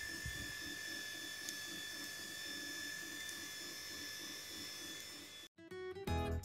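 Algo Alpha MK2 diode laser engraver running an engraving job: a steady whine of several fixed high tones, with a soft low pulse repeating about three times a second. It cuts off about five and a half seconds in, and music starts.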